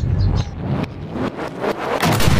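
Whooshing sound effect of a logo intro: a noisy rushing sweep over a deep rumble, with a few sharp hits.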